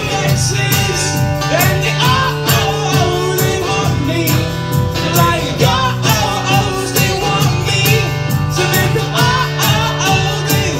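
Live band playing an upbeat country-style song: strummed acoustic guitar, a bass line and a steady percussion beat under group singing.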